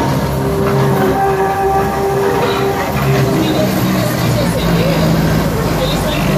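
Open-sided heritage electric tram rolling past at close range as it pulls away: steady running noise of steel wheels on the rails with a steady motor hum. Passengers' voices are mixed in.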